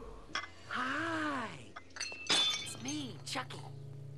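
A film scene's sound: a voice cries out, rising then falling in pitch for about a second, then a crash of breaking glass with clinking pieces a little after two seconds in, the loudest moment, followed by another short cry over a low steady hum.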